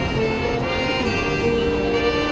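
High school marching band playing, winds and brass sustaining held chords that shift every half second or so.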